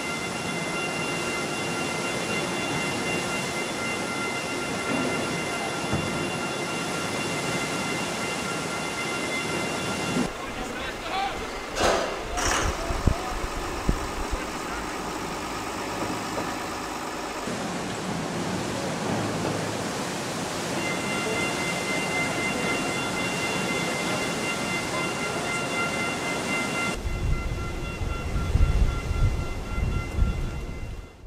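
Rushing wake water and running ship machinery at speed, with a steady high whine of several tones over the noise. A few sharp knocks and splashes about twelve to thirteen seconds in, and low wind rumble on the microphone near the end.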